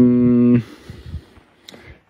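A man's drawn-out hesitation sound, one vowel held on a steady pitch for about half a second, then a pause with a faint click near the end.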